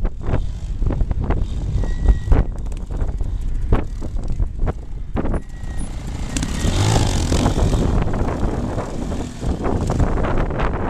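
Vintage trials motorcycle engine running under throttle as the bike climbs a steep dirt bank, louder and revving up from about six and a half seconds in. Wind buffets the microphone with sudden thumps throughout.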